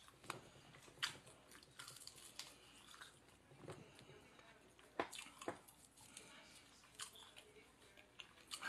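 Faint chewing and mouth sounds of someone eating a fried chicken wing, broken by scattered sharp clicks and smacks.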